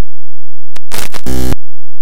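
Harsh, digitally distorted and clipped audio burst: a short click, then about half a second of loud static-like noise that ends in a heavy low buzz. Otherwise only a faint low hum.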